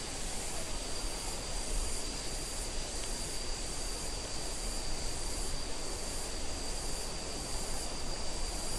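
Forest insects calling steadily: a continuous high-pitched whine with a higher buzz pulsing about once a second, over an even rushing hiss.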